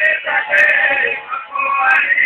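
A man singing a devotional song over music, the sung line continuing through the whole moment.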